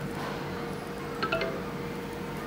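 A short electronic chime of a few quick notes about a second in, from a smartphone set on a Qi wireless charging pad, signalling that charging has started. A faint steady hum runs underneath.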